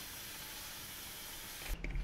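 Steady hiss of room tone and recording noise, with no distinct event. About 1.7 s in it cuts off abruptly to a quieter background with a low rumble, and a man's voice starts.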